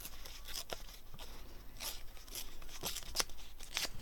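Paper scraps rustling and crackling as they are handled and moved about on a cutting mat, in a few short, separate bursts.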